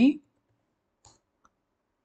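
Two faint, short clicks, about a second and a second and a half in, from keys of a computer keyboard as code is typed.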